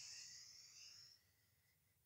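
A faint breath drawn in through the mouth, a soft hiss for a deep inhale that fades out about a second in, followed by near silence.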